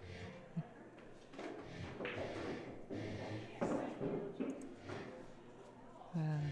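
Indistinct, low chatter of people talking in the room, with a single short knock about half a second in.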